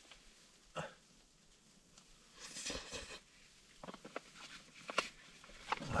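Faint sounds of eating hot food with a spoon from a foil meal pouch: scattered small clicks and rustles, with a short breathy sound about halfway through.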